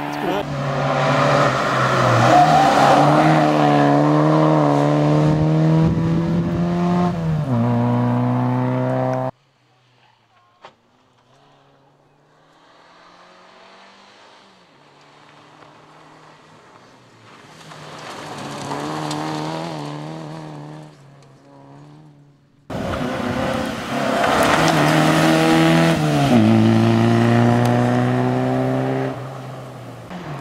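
Škoda Favorit rally car's 1.3-litre four-cylinder engine at high revs under full throttle, its pitch stepping down at upshifts. It is loud at first, then cuts to a much fainter, more distant run that swells as the car comes nearer. About three-quarters of the way through it is loud and close again.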